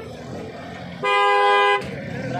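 A vehicle horn sounds once, a steady flat-pitched blast about a second in that lasts under a second.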